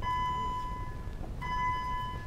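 A steady electronic beep of several fixed pitches sounds twice, each about a second long, with a short gap between.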